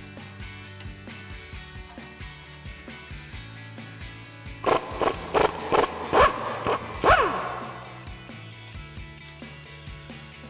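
Background music throughout. About halfway through comes a run of loud metallic clicks and clinks from a socket and wrench working the nut on a sway bar end link.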